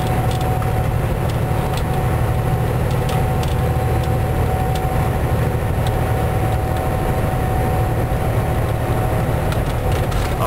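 Kenworth W900L semi-truck's diesel engine and road noise heard from inside the cab while cruising at highway speed: a steady low drone with a thin, steady whine above it.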